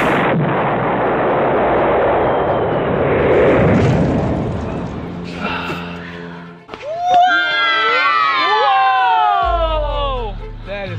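Dynamite explosion: a loud, noisy blast continuing for about five seconds, then fading. About seven seconds in, music with sliding tones comes in.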